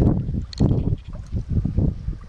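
Wind buffeting the microphone in irregular low rumbling gusts, several within two seconds.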